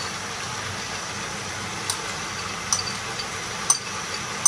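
Vegetables sizzling steadily in a pot on a gas stove, with three light clinks of a spoon against a ceramic bowl as green peas are scraped in.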